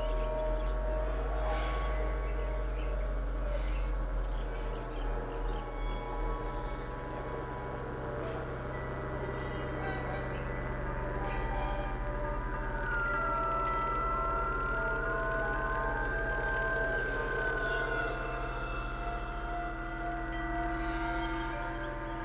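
Background music score: sustained held chords, with a single high tone that slowly bends up and down through the second half.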